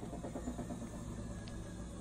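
Whirlpool Duet front-loading laundry machine running with a steady low hum.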